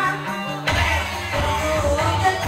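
Live dangdut band music, an instrumental passage with a plucked string line and no singing. The drums and bass drop out briefly and come back in under a second in.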